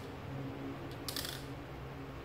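A marker pen's tip scratching across paper in one short stroke about a second in, over a steady low hum.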